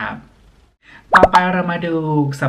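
A short, sharp pop sound effect about a second in, marking a slide transition, followed by a voice whose pitch slides downward.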